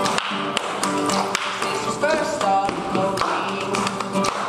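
Live acoustic string band playing an up-tempo tune: acoustic guitar and banjo picked with quick, crisp attacks, and a sliding melody line entering about halfway through.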